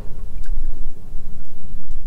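Low, gusty rumble of wind buffeting the microphone on an open boat, with no other distinct sound.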